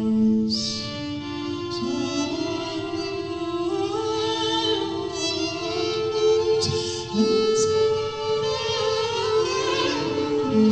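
A woman singing live over layered loops of sustained violin and vocal notes, several held at once and sliding up and down in pitch, with crisp 's' sounds from the voice at a few points.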